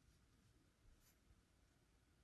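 Near silence, with faint scratchy sounds of a flat watercolour brush moving over paper.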